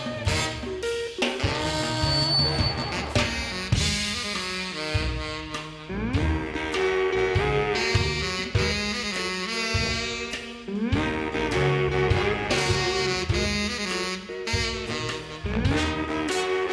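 New Orleans brass band playing jazz live: a pocket trumpet leads over saxophones, with a low bass line that slides up into its notes every few seconds and steady drums.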